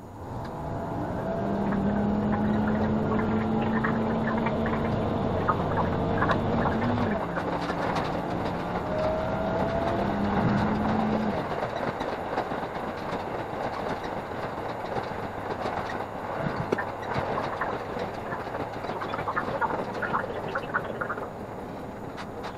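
Diesel railcar pulling away from a station: its engine note rises quickly and holds steady, with wheel and rail noise and quick clicks from the track. The audio runs at five times speed, so the rail clicks come fast.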